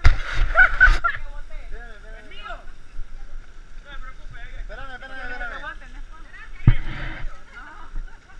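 Several people talking at once in the background, with a loud rushing, rustling noise for about the first second and a single sharp knock near the end.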